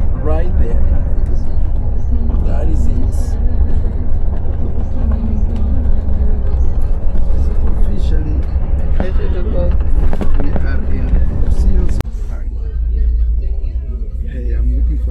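Coach bus driving, heard from inside the passenger cabin as a steady low rumble of engine and road noise. It drops abruptly to a quieter rumble about twelve seconds in.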